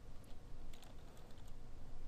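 Typing on a computer keyboard: a few light keystrokes at an uneven pace.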